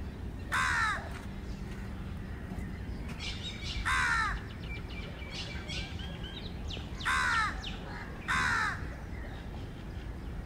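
A crow cawing four times, single short caws spaced a few seconds apart. Fainter chirps of smaller birds come in between, over a low steady background rumble.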